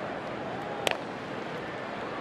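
Wooden baseball bat hitting a pitched ball, one sharp crack a little under a second in, over a steady murmur of the stadium crowd.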